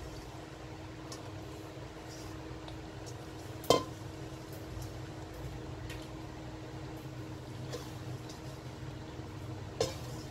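Kitchenware clinking once, a sharp knock that rings briefly about four seconds in, as shrimp are transferred from a metal bowl into a slow cooker. Faint handling ticks and a smaller click near the end sit over a steady low hum.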